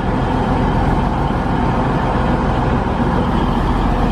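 Class 185 diesel multiple unit's underfloor diesel engines running steadily beside the platform.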